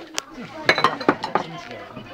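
Dishes and glasses clinking on a table: one sharp clink just after the start, then a quick run of clinks about a second in, under quiet talk.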